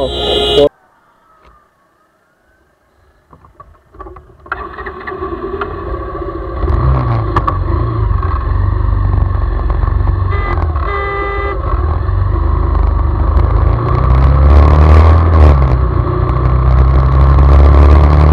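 Motorcycle running at road speed, fading in after a few seconds of near silence and growing louder, with a brief steady pitched tone about ten seconds in.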